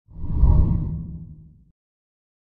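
A single deep whoosh sound effect for an animated outro graphic, swelling in and fading away over about a second and a half.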